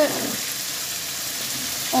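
Floured fish fillets frying in hot oil in a pan: a steady sizzle.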